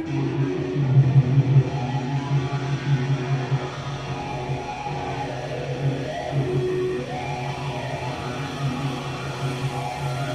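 Live electric guitar and bass playing a slow, quiet passage of long held notes over a steady low bass note, with no drumbeat.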